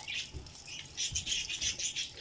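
Whole black peppercorns and sliced onions sizzling in hot oil in a steel pot, with a quick run of crackles starting about a second in.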